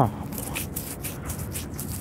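Fingers rubbing sand and grit off a freshly dug nickel, a gritty scraping with many small crackles.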